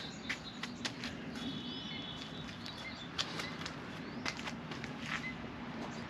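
Faint scattered light ticks and taps over a low steady hum, with a brief thin high tone about one and a half seconds in.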